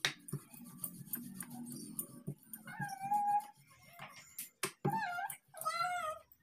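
Rolling pin working paratha dough on a round board, with a low rolling rumble and a few sharp knocks. Around the middle and again near the end come three short, high-pitched, wavering calls.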